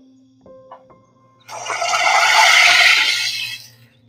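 Water poured into hot oil in a kadai, giving a loud sizzling splash that starts about one and a half seconds in and dies away just before the end.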